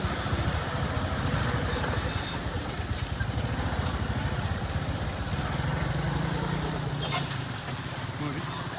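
Small motorcycle engine running at low speed close by, with other traffic around; its pitch rises a little about five seconds in and eases off near the end.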